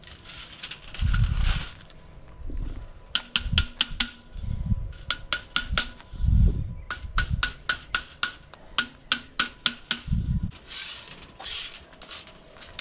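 A hand crimping tool closing again and again on an aluminum border strip, crimping it shut over quarter-inch hardware cloth. Its sharp clicks come in runs, several a second at times, with a few dull thumps in between.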